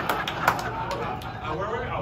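Voices on a stage talking and laughing over each other, not clear enough for words, with several sharp clicks in the first second or so.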